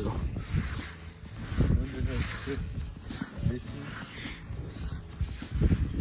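Wind rumbling on a phone microphone, with faint talking.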